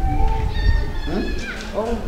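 A small child's high-pitched, wavering cries over voices in the room, with a low rumble during the first second.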